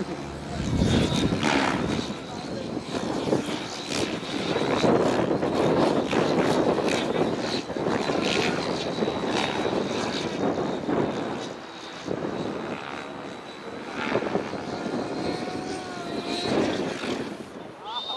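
Thunder Tiger Raptor G4 E720 electric RC helicopter flying 3D aerobatics at a distance, its rotor making a continuous whirring hum, with people talking over it.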